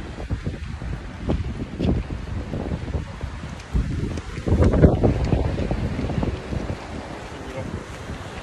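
Wind buffeting a phone's microphone in uneven low gusts, the strongest about halfway through.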